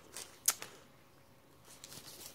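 Journal pages being handled: a light paper rustle and one sharp tick about half a second in, then faint rustling near the end.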